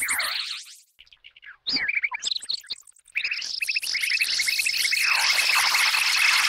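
Electronic music built from high, synthesized chirping tones. Gliding sweeps at the start drop to near silence about a second in, then return as scattered chirps and clicks. From about halfway these build into a dense, steady run of rapid high chirps.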